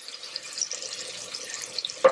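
A ladleful of hot stock poured into a pot of arborio rice, over the steady hiss of the rice simmering in the pot.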